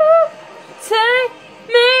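A young woman singing three short held notes, each bending in pitch.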